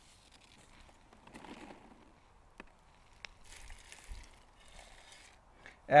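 Faint rustling and scraping of a hand scoop digging granulated chicken manure out of a plastic sack, with a couple of small clicks in the middle.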